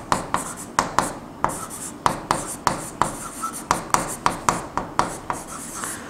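Marker pen writing on a whiteboard: a quick, irregular run of short strokes and taps, a few of them squeaking.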